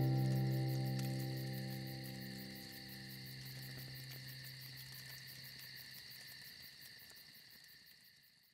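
A final acoustic guitar chord rings out and slowly fades, over a steady high chirping of crickets that fades out at the very end.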